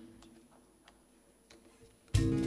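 Near silence: hall room tone with a few faint ticks, about two thirds of a second apart, and a lingering low note dying away at the start.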